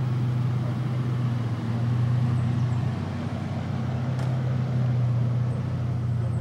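Isuzu SUV's engine running as it rolls slowly along at low speed, a steady low hum.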